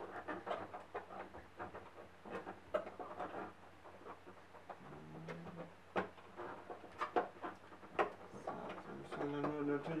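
Handling noise from an HDMI plug being fumbled into a TV's side port: light plastic scrapes and several sharp clicks as the plug is turned and pushed home, with a few low murmurs and breaths.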